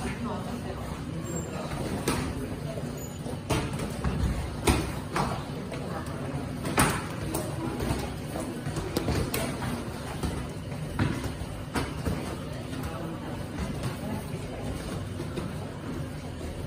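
Kickboxing gloves and shin guards slapping and thudding as kicks and punches land during light sparring: about a dozen irregular sharp hits, the loudest about five and seven seconds in, over a steady low background rumble.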